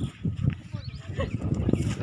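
Wind buffeting a phone's microphone, heard as an uneven low rumble, with faint voices in the distance.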